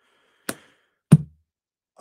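Two short knocks about two-thirds of a second apart, the second louder and heavier.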